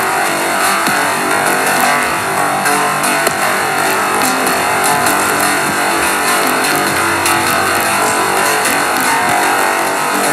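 Electronic synthpop: a dense, steady synthesizer texture of many sustained tones from the Aparillo FM synth app on iPad.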